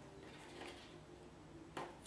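Faint handling of watercolour paper on a drawing board, then one sharp click near the end as a metal binder clip is worked onto the board's edge.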